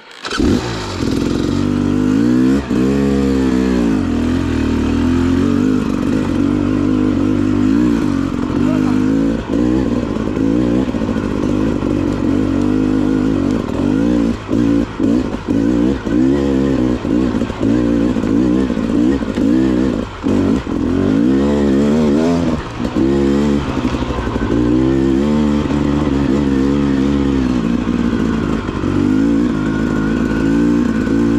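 Dirt bike engine running under throttle on a trail, its pitch rising and falling as the rider opens and closes the throttle. The engine comes in suddenly at the start, and there are a few brief drops in the engine note.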